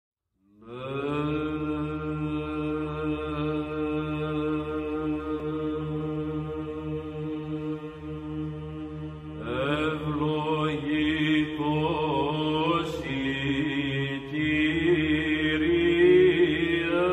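Background music with a chant-like sustained drone that fades in at the start. About nine seconds in, a wavering, ornamented melodic line enters over the drone.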